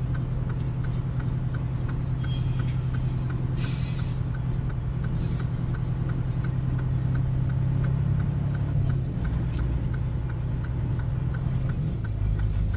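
Semi-truck diesel engine idling steadily, heard from inside the cab as a low hum with a faint regular ticking of about two or three a second. A brief hiss comes about four seconds in.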